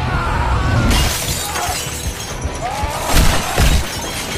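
Film sound effects: a sudden crash about a second in, followed by shattering and breaking debris, then two heavy hits near the end, over the film's music.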